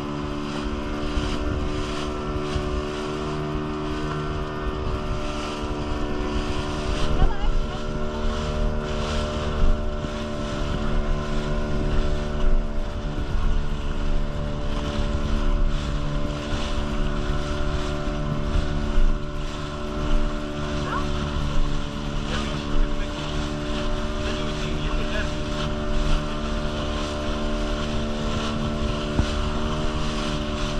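A small boat's motor running at a steady speed, with water rushing past and slapping against the hull in irregular splashes.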